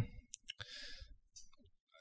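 Faint mouth clicks and a soft breath from a man pausing to think close to a microphone, just after a drawn-out "hmm".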